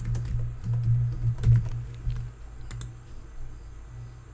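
Computer keyboard typing a single word in a quick run of keystrokes over the first two seconds or so, then quieter.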